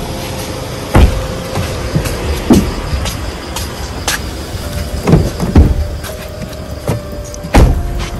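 Car doors and bodies knocking against a car as people climb in: a handful of dull heavy thumps, the loudest about a second in and near the end.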